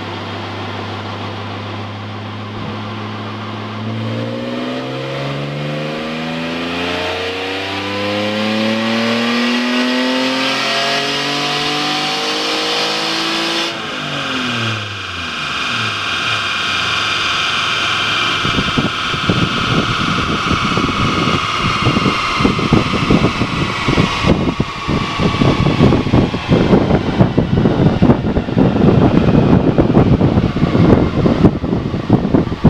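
Alfa Romeo 164 Super's 3.0 24-valve V6 on a chassis dynamometer, running steadily, then revving up under load in a long climb. About 14 seconds in the note drops suddenly and climbs again. Over the second half a loud, rough rushing noise grows until it is the loudest sound near the end.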